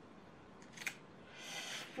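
Paper being handled and slid on a card: a short tap or click a little under a second in, then a soft rustle that swells toward the end.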